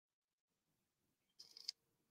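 Near silence: room tone in a pause of speech, with one faint click near the end.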